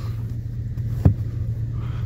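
Vortec 5.3 V8 of a 2001 GMC Yukon idling steadily, heard from inside the cabin, with a single sharp knock about a second in.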